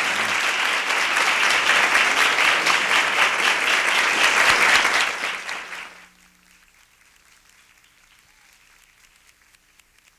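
Audience applauding, the clapping dying away about five to six seconds in and leaving only a faint low hum.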